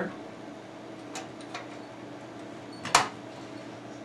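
A hard drive being slid into the metal drive bay of a steel PC tower case: two faint clicks just after a second in, then one sharp metallic click near three seconds as the drive knocks against the bay.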